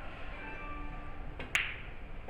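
A pool cue's tip striking the cue ball with a light tap, then a moment later a sharp, ringing click as the cue ball hits an object ball.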